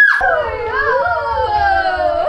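Voices in a long, drawn-out cry that slides slowly down in pitch, more than one voice together, starting just after a sudden change of sound.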